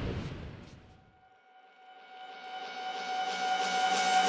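Surf and wind noise fading out, then a single held synth note swelling up steadily as background music begins.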